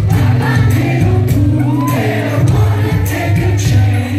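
Indie-pop band playing live: a steady bass line and drum hits under a sung melody, with many voices from the audience singing along.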